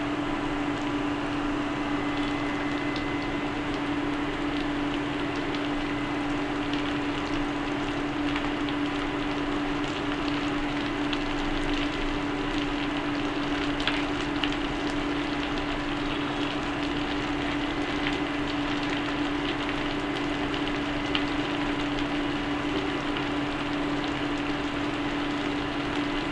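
Steady hum of an induction cooktop's cooling fan, with a faint crackle from bitter gourd slices cooking in the pan.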